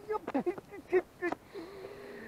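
A man's short dismayed vocal exclamations, then a long, level groan from about one and a half seconds in: his reaction to a big zander that has just thrown the hook.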